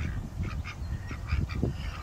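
Ducks on the water giving a run of short, soft quacking calls, about six a second, thinning out towards the end, over a low rumble.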